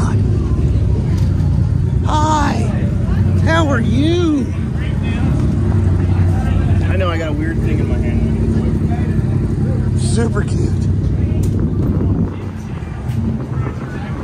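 An engine running with a steady low drone, which drops away about twelve seconds in. Voices call out over it several times.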